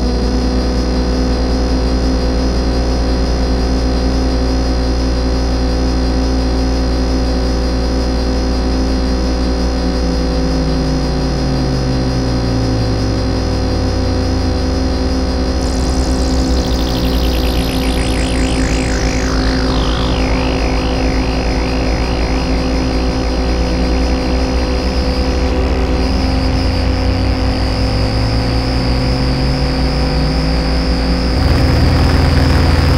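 Analog synthesizers playing a thick, steady drone of several held tones, processed with reverb and delay. A low tone glides slowly down partway through and back up near the end, and about halfway through a high whistling tone sweeps down in pitch, then wobbles.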